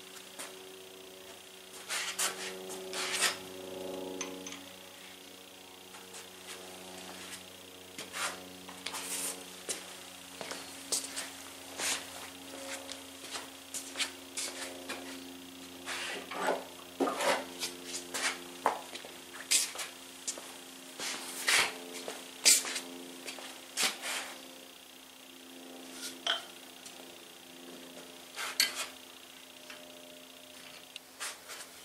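Scattered sharp metal clinks and taps, with a few louder knocks, from hand tools on the flywheel hub and gib keys of a 1920 International Type M hit-and-miss engine as the keys are set tight.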